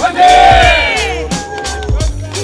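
A group of people shouting together in one loud cheer, loudest in the first second and trailing off, over background music with a steady beat.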